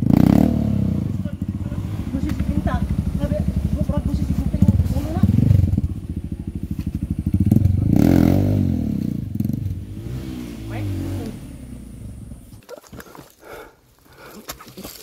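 Single-cylinder dirt bike engine running close by with rapid firing pulses and some revving, fading and then cutting off about a second and a half before the end.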